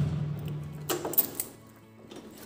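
A Peugeot Kisbee scooter's engine being switched off with the ignition key: its idle hum dies away within the first second, followed by a few sharp clicks of the key.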